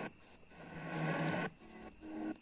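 AM radio being tuned up the medium-wave band from 1270 to 1310 kHz. The audio cuts out abruptly as it leaves each frequency, and in between there is only static hiss with a steady low hum, no clear station.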